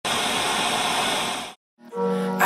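Video-tape static hiss, as from a VHS playback, which cuts off suddenly about one and a half seconds in; music begins just before the end.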